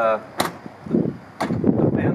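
Two sharp clicks about a second apart as the trunk lid of a 2002 Ford Thunderbird is pressed down and latches shut.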